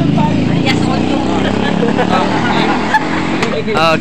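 A motor vehicle's engine running close by, easing off about two to three seconds in, with voices talking over it.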